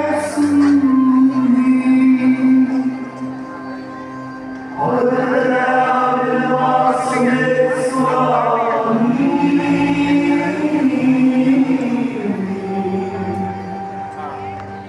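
Slow chanted liturgical singing with long held notes, growing louder as a new phrase begins about five seconds in.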